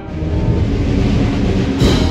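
A brass and drum band playing a processional march: a loud, dense, sustained passage, with a strong accent near the end.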